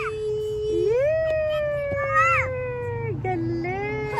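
A child's voice making long, drawn-out wordless vowel sounds, each held for a second or two and slowly falling in pitch, with a new one starting lower near the end.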